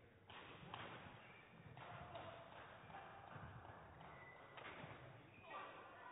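Quiet sports-hall ambience: faint, indistinct voices and a few soft knocks.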